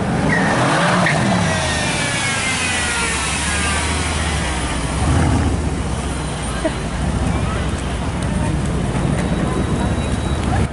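V8 exhaust of a Mercedes-AMG C63 saloon driving past at low speed. The revs rise and fall over the first few seconds, then settle into a steady low drone, with a louder push about five seconds in.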